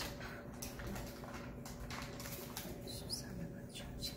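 Electric potter's wheel humming steadily as wet hands work the spinning clay, with faint squeaks and scattered light clicks. Near the end, wooden and metal tools clatter in a tool bucket.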